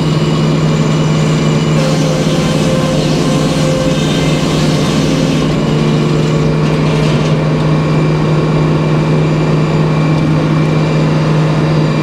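Circular sawmill running: the big head-saw blade spinning and the mill's power unit humming steadily at one constant pitch.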